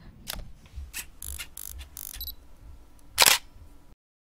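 A scatter of short clicks and rustles, like desk and microphone handling noise, with one louder burst about three seconds in; the sound then cuts off abruptly to silence.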